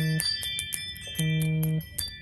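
Electronic toy sound effects: a steady low electronic tone sounding in two short blocks, about two-thirds of a second each, over a run of rapid clicks and high bell-like ringing tones.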